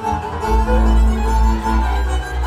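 Hungarian folk dance music led by a fiddle, with a strong, steady bass underneath.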